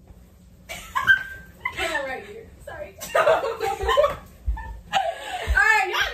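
Women's excited voices and laughter, starting about a second in after a brief hush, with a run of laughter near the end.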